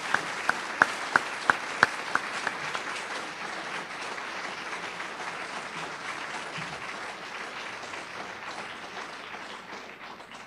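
An audience applauding. One person's louder, closer claps stand out at about three a second over the first two seconds, and the applause slowly thins toward the end.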